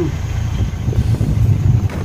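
Tour bus engine running, a steady low rumble.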